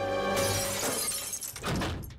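Cartoon background music with a held chord that gives way, about half a second in, to crashing, shattering sound effects.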